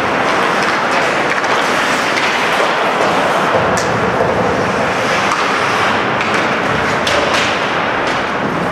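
Ice hockey rink during play: a steady wash of skates on ice and arena noise. A sharp clack of stick on puck comes about four seconds in, with lighter clacks near the end.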